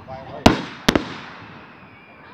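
Two firework shells bursting about half a second apart: two sharp bangs, each fading away in an echo.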